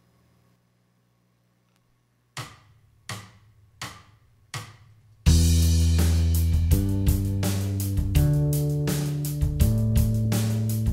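A faint low hum, then four count-in clicks evenly spaced, after which a rhythmic groove kicks in about five seconds in: drum kit and bass guitar with a Telecaster-style electric guitar playing rhythm parts over them.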